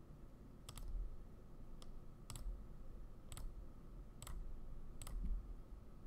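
Computer mouse clicking: about six separate sharp clicks at irregular intervals, each followed by a pause.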